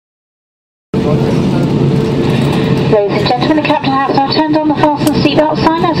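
After about a second of silence, the steady drone of an Airbus A319's cabin in flight cuts in: engine and airflow noise with a steady hum. From about three seconds in, a cabin-crew announcement over the PA plays on top of it.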